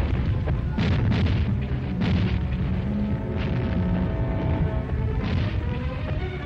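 Dramatic newsreel music score mixed with booming battle sound effects: a heavy low rumble, with several sharp blasts spread through it and held musical chords in the middle.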